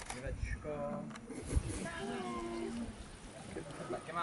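A person's voice giving two long, drawn-out cat-like meows, one after the other. A short low rumble of wind on the microphone comes between them.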